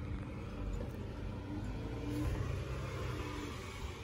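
Low, steady outdoor street rumble, swelling a little about two seconds in.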